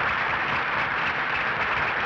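Theatre audience applauding, a dense, even clatter of many hands clapping.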